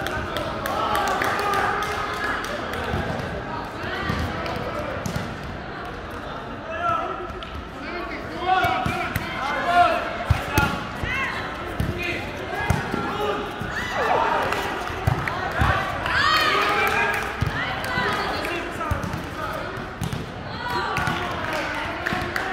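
Volleyball rally: a series of sharp ball hits and bounces, most of them in the middle of the stretch, amid players' shouts and chatter in a large, echoing sports hall.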